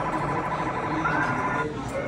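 Electronic game sound from a claw machine: a buzzy electronic tone that lasts about a second and a half, with a short rising chirp shortly before it cuts off.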